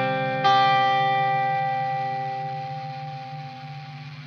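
Slow doom rock music: clean guitar through an echo effect, with a chord struck about half a second in that rings out and slowly fades.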